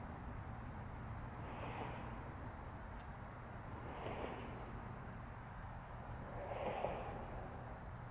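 A person breathing softly: three slow, breathy swells about two and a half seconds apart, over a steady low rumble.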